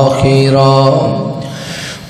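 A man reciting the Quran in the melodic tilawat style through a microphone and PA. He draws out a verse ending on a wavering held note that fades away with echo in the second half.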